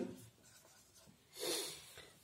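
A felt-tip marker writing on a whiteboard: one short scratchy stroke about a second and a half in.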